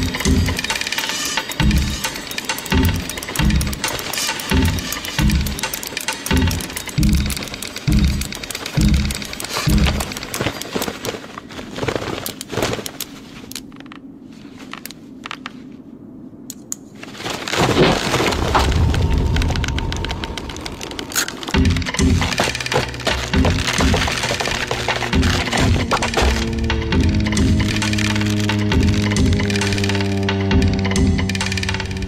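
Soundtrack of an animated short film: music with a regular low beat, about three beats every two seconds. A quieter stretch with a few sharp cracks follows, and then the music swells louder and ends on held low notes.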